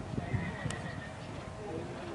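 Dressage horse's hooves thudding on sand arena footing at trot, with a faint high call about half a second in.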